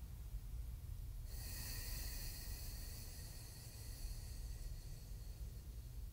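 One long, slow breath through a single nostril, the other held shut by the fingers, in alternate-nostril breathing: an airy hiss that starts about a second in and fades near the end.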